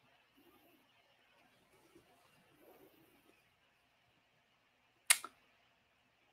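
Faint room tone, broken about five seconds in by one sharp click followed at once by a fainter one.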